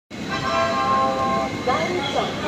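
A train horn sounds one steady multi-tone blast of about a second and a half over the general noise of a railway station platform, followed by people's voices.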